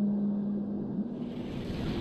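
Documentary background score: a low sustained drone, with a soft whoosh swelling up near the end.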